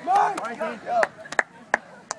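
Excited voices calling out, then a few sharp, single hand slaps spaced a few tenths of a second apart: open-hand pats on backs during celebratory hugs.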